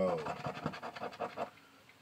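Rapid scratching strokes on a 50X scratch-off lottery ticket, rubbing the coating off the number spots, for about a second and a half before stopping.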